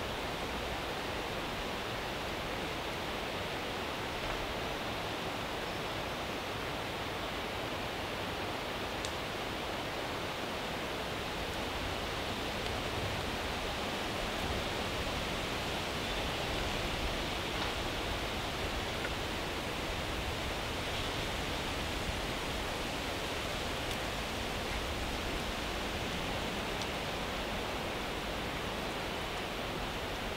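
Steady, even rushing hiss of forest ambience, swelling slightly around the middle.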